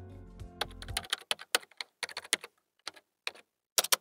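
Computer keyboard typing: a run of irregular key clicks starting about half a second in, as a query is typed into a search bar.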